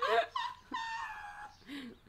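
A high-pitched, whining human voice: a short rising cry at the start, then a held wail of about half a second in the middle, and a brief third sound near the end.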